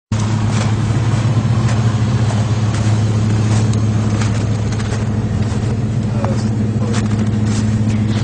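Toyota 4x4 truck's engine running steadily at an even low pitch, with scattered sharp clicks over it.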